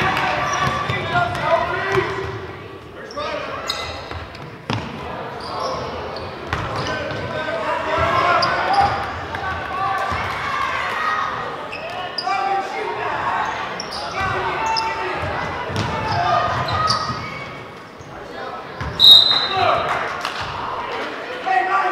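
Basketball game in a gymnasium: indistinct voices of players, coaches and spectators echoing in the hall, with a basketball bouncing on the hardwood floor. Near the end a referee's whistle blows briefly, the loudest sound, stopping play.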